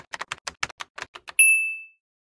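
Typewriter sound effect: a quick run of keystroke clacks, then a single bell ding, the carriage-return bell, about a second and a half in that rings out briefly.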